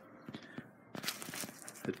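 Fabric holster flap being handled, with a crackly rustle of its Velcro fastening lasting about a second, starting about a second in.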